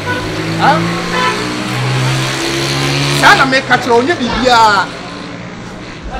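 An engine running steadily with a low hum that fades out about halfway through, under short bursts of a man's speech.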